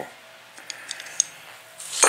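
Light clicks and taps from handling aluminium extrusion and small corner brackets: a few faint ticks with one sharper click about a second in, then a louder clatter of brackets starting near the end.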